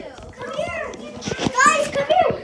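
Children's voices chattering and playing, with one child's voice rising high and loud near the end, and a few small knocks among the talk.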